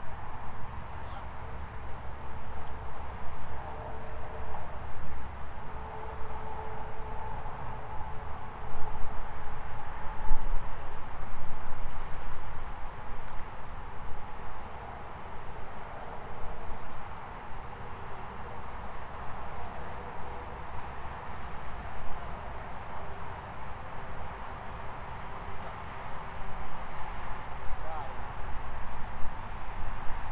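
Outdoor ambience dominated by gusty wind noise on the microphone, louder about a third of the way in, with faint distant voices.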